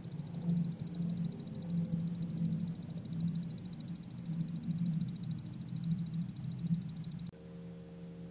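Stroboscope clicking with each flash, a fast even ticking of about thirteen a second, over the low hum of an electrodynamic shaker driving a beam at its first natural frequency of about 14 Hz. About seven seconds in, the ticking stops and a steady low hum takes over as the shaker drives the beam at about 77 Hz.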